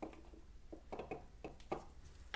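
Faint handling sounds from a gloved hand pouring acrylic paint from a small cup onto a canvas: a few soft, scattered clicks and rustles over a low, steady hum.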